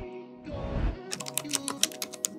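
Logo sting: a synth chord with swelling whooshes, then a quick run of keyboard-typing clicks starting about a second in.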